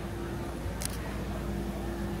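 A single brief, sharp click about a second in, over a steady low hum.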